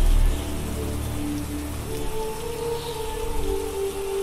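Steady rain falling under soft background music holding long sustained notes; the heavy low part of the music drops away just after the start.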